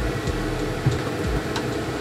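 A steady mechanical hum, with a couple of faint knocks partway through.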